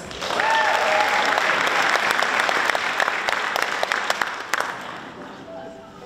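Audience applauding, with a brief cheer near the start; the clapping fades out about five seconds in.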